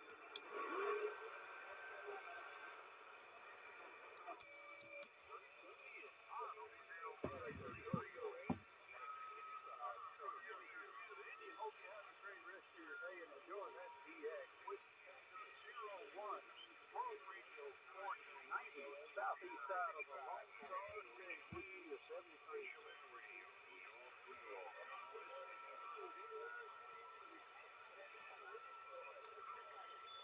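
CRT SS-9900 CB radio receiving the 11-metre band through its speaker: steady band hiss with weak, garbled distant voices fading in and out. There is a low thump about seven seconds in, and a steady whistle near the end.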